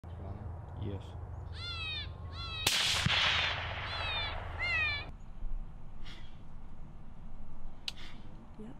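A single gunshot about two and a half seconds in, a sharp crack followed by a rolling echo. Bursts of short, high, downward-sliding yelps come just before it and again after it. Another sharp crack comes near the end.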